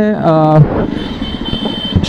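A man's voice ends about half a second in, leaving a Jawa Perak's single-cylinder engine running at low speed in slow traffic, with road and wind noise and a faint high steady whine in the second half.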